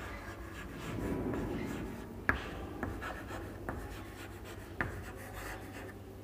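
Chalk writing on a chalkboard: scratchy strokes broken by sharp taps of the chalk against the board, the two loudest a couple of seconds in and again near the end.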